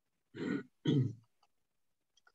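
A man clearing his throat twice, two short rough bursts about half a second apart, just before reading aloud.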